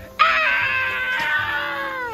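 A long high-pitched scream that starts suddenly, slides slowly down in pitch for almost two seconds and drops away steeply at the end.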